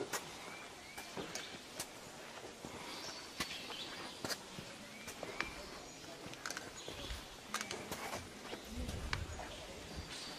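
Irregular sharp taps and clicks in an outdoor setting, with a few short rising bird-like chirps scattered through and a brief low rumble near the end.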